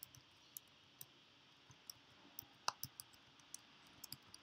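Faint typing on a computer keyboard: scattered, irregular key clicks over a low hiss, with one louder click a little before three seconds in.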